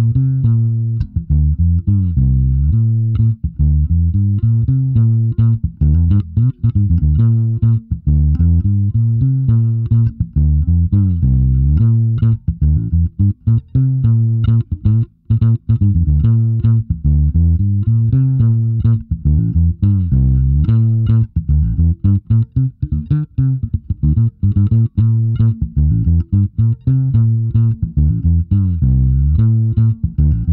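A Waterstone Meaden medium-scale, set-neck fretless electric bass played fingerstyle as a solo line. It runs as a continuous stream of notes, many of them sliding smoothly from one pitch to the next.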